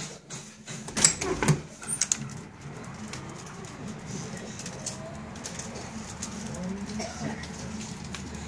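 Motel room door being unlatched and opened: a cluster of sharp metal clicks and knocks from the latch and door about a second in, the loudest sounds here. Then a steady background hum of the open air outside.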